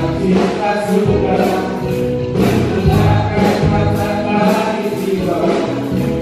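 Live praise-and-worship music: a worship team and choir sing an Indonesian gospel song in Indonesian over a church band, with a steady beat about twice a second.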